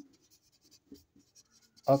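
Felt-tip marker writing on a whiteboard: faint, scratchy pen strokes as a word is written out. A man's voice comes in near the end.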